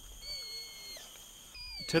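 Faint, thin high-pitched squeaky calls of a baby orangutan. One is held for under a second, and a shorter one comes near the end with a quick falling note.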